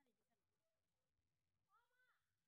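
Near silence, with one faint short call that rises and falls near the end.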